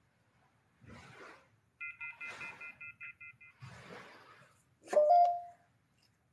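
A rapid run of short electronic beeps, several pitches pulsing together, lasts about two seconds. Around it come a few soft rustling or crunching sounds, and about five seconds in a brief, louder tone stands out above the rest.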